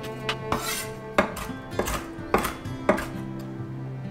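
Knife chopping roasted hazelnuts on a wooden cutting board, about six evenly spaced strokes, over background music.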